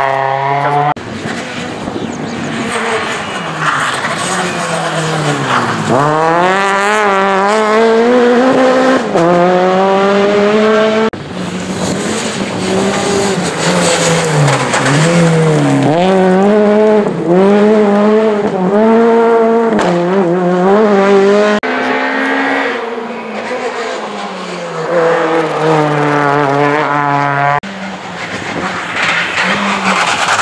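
Rally car engines, a Škoda Fabia and a Peugeot 208, revving hard up through the gears and dropping off as the cars lift and brake for corners, with tyre noise from sliding on the loose surface. The sound jumps abruptly several times between passes.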